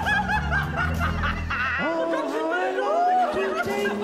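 A karaoke backing track plays while a man and a woman laugh hard over it. The bass of the music drops out a little under two seconds in.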